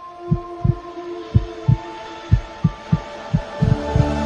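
A heartbeat sound effect: low double beats about once a second, under a few steady held tones.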